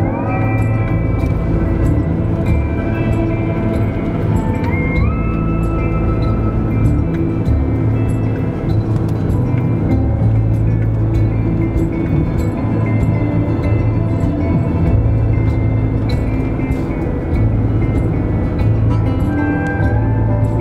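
Background music of sustained notes, with the pitch sliding up once near the start and again about five seconds in.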